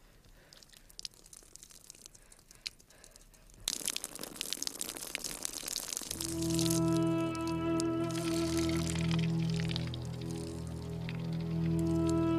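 Water poured from an earthenware jug, splashing onto dry, stony ground, starting suddenly about four seconds in. From about six seconds soft music with long held chords takes over and grows louder.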